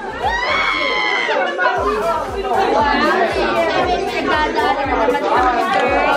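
A group of people shouting and talking over one another, starting with a long high whoop, over background music with a steady bass beat.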